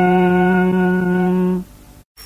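A man's voice holds the final sung note of a Tày Then folk song as one long, steady tone, which stops about one and a half seconds in.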